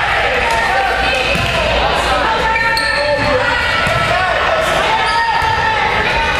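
Volleyball being hit and bouncing with sharp slaps that echo in a gymnasium, over players and spectators calling out and shouting.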